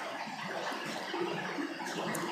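Steady, faint background hiss of room and microphone noise, with no distinct events.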